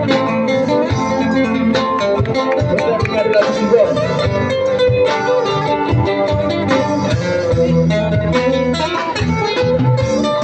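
Live street band playing an instrumental passage of a rock ballad: strummed acoustic guitars with electric guitar and a drum kit keeping the beat, a few notes bending up and down in pitch.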